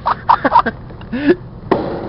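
A man laughing in short bursts, then a brief voice sound and a sharp click near the end.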